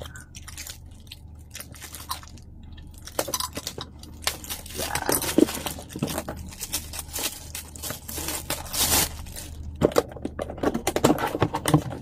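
Clear plastic bag crinkling and crackling as it is torn open and pulled off a cardboard box, in irregular bursts of handling noise.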